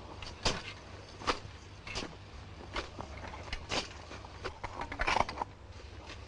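Irregular wooden creaks and knocks, roughly one every second, from the large wooden rabbit being hauled along on its wheels. The loudest cluster of knocks comes about five seconds in.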